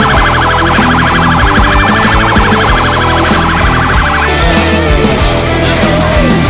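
A siren warbling rapidly over loud heavy rock music, cutting off about four seconds in while the music carries on.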